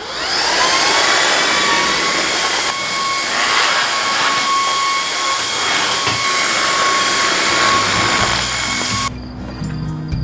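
Cordless stick vacuum cleaner starting up with a rising whine, then running steadily with a high motor whine as it is pushed over a tiled floor. It cuts off suddenly about nine seconds in as music takes over.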